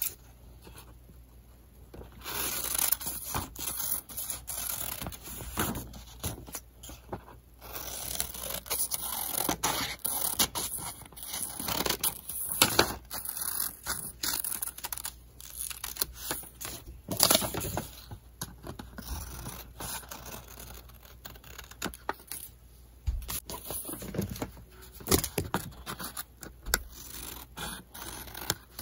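Scissors cutting through a folded paper pattern: a run of repeated snips and paper scraping that starts about two seconds in.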